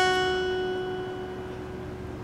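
A single note on an acoustic guitar, the second string at the fifth fret, plucked just before and ringing out, fading slowly.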